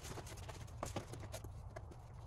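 Leather straps being pulled tight through their buckles around a rolled foam sleeping pad on a canvas backpack: scattered small clicks and knocks with rubbing and rustling between them.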